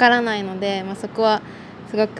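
Speech only: a woman speaking Japanese.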